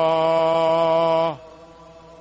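A group of voices sings a sustained 'ah' in unison on one steady pitch as a breathing exercise. The throat is kept in a relaxed, sighing position while the breath speed is raised, which gives the tone more volume and carry. The tone holds level and then stops about a second and a half in, dipping slightly as it ends.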